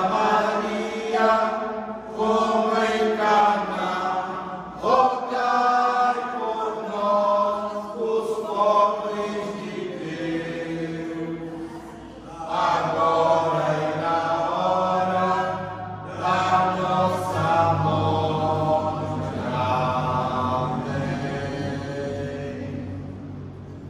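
A group of voices reciting rosary prayers together in Portuguese, in a steady chant-like cadence of phrases with brief pauses between them.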